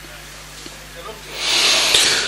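A breathy hiss into the microphone that swells up about halfway through and lasts about a second, over faint hall noise: the Quran reciter drawing a deep breath before his next long chanted phrase.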